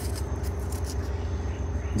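A steady low hum in the background, with a few faint ticks.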